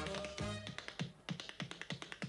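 Tap-dance steps in a quick run of sharp clicks on a wooden bar top, over backing music that thins out about half a second in.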